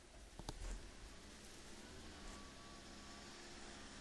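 Near silence: faint room tone, with a couple of light clicks about half a second in.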